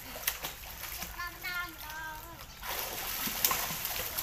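Children splashing water in a small plastic-lined pool. There are scattered splashes at first, then continuous heavy splashing from nearly three seconds in.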